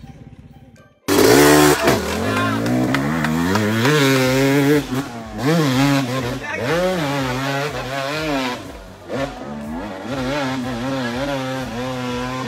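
Dirt-bike engine revving up and down, its pitch rising and falling every second or so. It starts loud about a second in, after a quieter opening.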